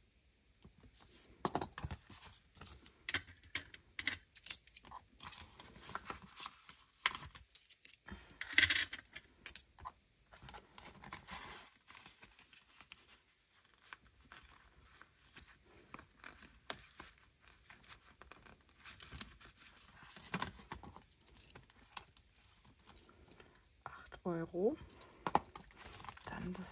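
Clear plastic sleeves and zip pockets of a cash binder rustling and crinkling as they are handled, with scattered clicks, a few sharp knocks and coins clinking as money is put away.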